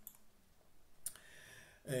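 A single short, sharp click about halfway through a quiet pause, followed near the end by the start of a man's hesitant 'yy'.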